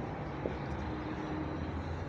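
Dry-erase marker writing on a whiteboard, with one short tap about half a second in, over a steady low room hum.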